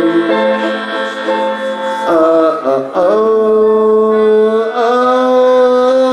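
Live acoustic folk band playing, with strummed acoustic guitar and mandolin under a sustained melody line whose notes are held and bent in pitch around two and three seconds in.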